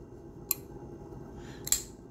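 CJRB Riff button-lock folding knife clicking twice as its blade is worked, a sharp click about half a second in and a louder one near the end.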